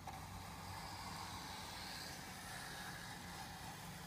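Small hand plane shaving a wooden wing leading edge with a light touch, a faint, steady scraping hiss with a low hum underneath.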